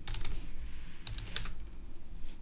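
Typing on a computer keyboard: a few separate keystrokes, quick clicks with short gaps between them.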